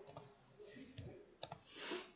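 A few faint, separate computer keyboard keystrokes: a single click, another about a second in and a quick pair about halfway through. Near the end comes a short soft breath.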